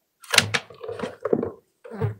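A man's voice speaking briefly in short broken phrases, the words unclear.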